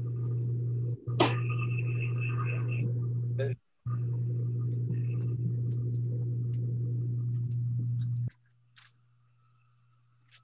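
A steady low hum, loud and even, with a short sharp noise about a second in. It drops out briefly twice and cuts off suddenly after about eight seconds.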